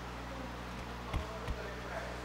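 Microphone at a lectern being handled: two short low thumps about a third of a second apart, a little over a second in, over a steady low electrical hum from the sound system, just before a sound check.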